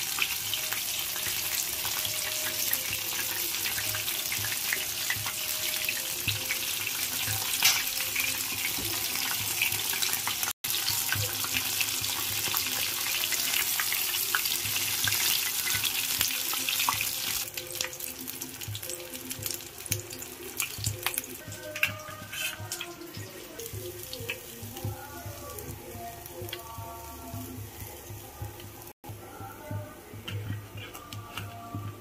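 Chicken leg pieces deep-frying in hot oil: a steady sizzle with many small crackles and spits. The sizzle drops to a quieter level about two-thirds of the way through. Faint background music can be heard in the later part.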